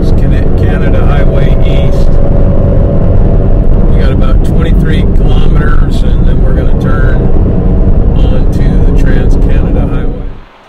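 Steady road and engine noise of a Toyota 4Runner driving at highway speed, heard from inside the cab as a loud, even rumble. It cuts off suddenly at the end.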